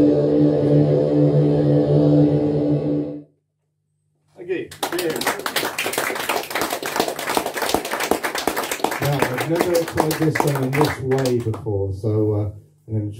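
A sustained musical drone of many held tones cuts off suddenly about three seconds in. After a second of silence, audience applause breaks out, with voices calling out over it near the end.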